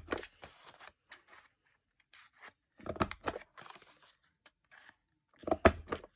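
Envelope punch board's corner rounder being pressed down on designer series paper, each press a short crunching click as a tab corner is cut off, with paper rustling between presses. The clearest punches come about three seconds in and near the end.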